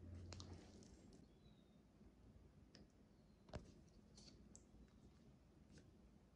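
Near silence with a few faint clicks and taps, the loudest about three and a half seconds in, as thick mango pulp is poured from a blender jar into a plastic measuring cup.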